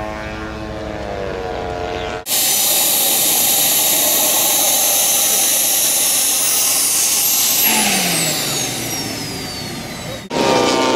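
For the first two seconds, a large model warbird's piston engine drones as it flies overhead, its pitch sagging slightly. Then comes a turbine-powered model jet's engine running on the ground: a loud rushing hiss with a high whine. From about two-thirds of the way in, the whine slides down in pitch and the noise eases off as the turbine spools down.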